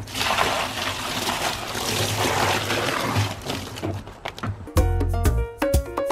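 A bucket of water is dumped into an empty plastic wheelie bin: a loud, steady splashing rush for about four seconds that dies away. Background music with a heavy bass beat comes in near the end.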